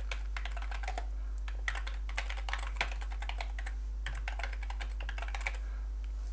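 Typing on a computer keyboard: quick runs of keystrokes with a brief pause about four seconds in, stopping shortly before the end, over a steady low hum.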